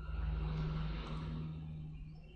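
Background noise: a steady low hum under a soft rushing sound that swells in the first second and fades toward the end.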